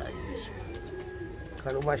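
Domestic flying pigeons cooing softly on the rooftop loft, with a faint steady high tone under them. A man's voice breaks in near the end.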